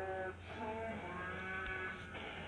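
Slowed-down cartoon song playing from a TV: a singing voice drawn out into held notes that step up and down, over music.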